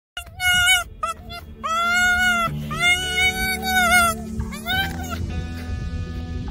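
Red fox making a run of high-pitched whining calls: several short ones, then two longer drawn-out ones, the last near the end, over background music.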